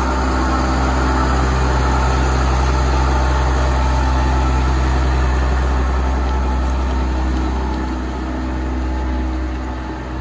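The six-cylinder diesel engine of a 2003 Case IH MX210 tractor runs at a steady note as the tractor drives past and away. The sound fades a little near the end.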